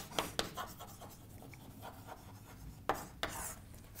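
Chalk tapping and scraping on a chalkboard as words are written: a quick run of short taps in the first second, then a couple more about three seconds in.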